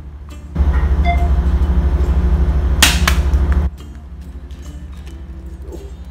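Ship's engine drone, a steady low hum with a fast even pulse. About half a second in, a loud rushing noise starts abruptly and cuts off about three seconds later, with a sharp click near its end.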